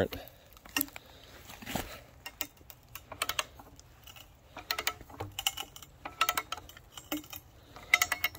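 Irregular clusters of short metallic clicks from the ratchet handle of a hand-turned cone-screw log splitter as the threaded screw is wound into soft, punky wood.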